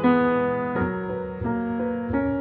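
Slow instrumental classical music on piano: single notes and chords are struck every half second to second, and each rings on and fades before the next.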